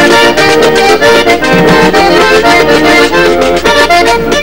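Diatonic button accordion playing a quick vallenato melody, with a steady percussion rhythm underneath.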